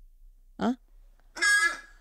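Squeaky rubber toy pig being squeezed by hand, giving two short squeaks: a brief one in the first half and a longer, higher one near the end.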